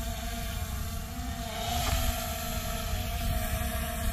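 Small quadcopter drone hovering overhead, a steady propeller hum, with wind rumbling on the microphone.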